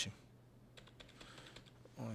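A few faint computer keyboard key clicks in the middle of a quiet stretch, pressed as the browser page is refreshed.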